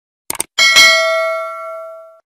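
Subscribe-animation sound effects: a quick double mouse click, then a bright notification-bell ding that rings on and fades away over about a second and a half.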